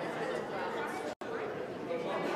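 Indistinct chatter of many people talking at once, broken by a very brief dropout about a second in.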